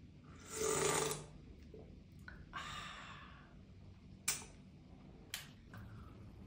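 A person slurping soup from a spoon: a loud slurp about half a second in, then a softer one a couple of seconds later. A few short sharp clicks follow near the end.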